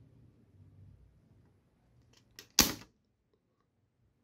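Spring-loaded desoldering pump fired on a heated solder joint: a light click, then one sharp snap of the released plunger about two and a half seconds in, sucking the molten solder off a transistor leg.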